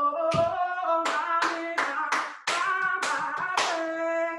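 A woman singing a sustained wordless melody over her own body percussion: a low thump on a wooden box early on, then sharp hand claps about two to three a second from about a second in.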